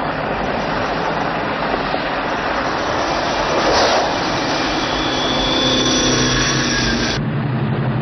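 Vehicle engines running and tyres rolling on a dirt road, as chase-scene sound effects, with a swell of noise about halfway through and a steady engine tone late on that cuts off just before the end.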